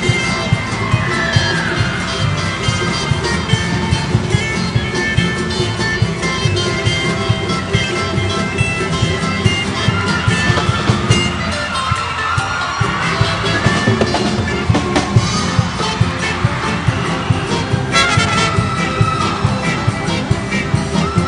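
Live instrumental band music: acoustic guitars and ukuleles strumming a steady beat, with trumpets and saxophones carrying the melody.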